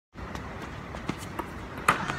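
A player's running footsteps on an outdoor court over steady background noise, with a sharp bang near the end.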